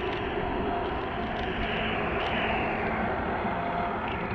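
Steady rush of wind on the camera and tyre noise on a wet road from a bicycle being ridden, slowing down.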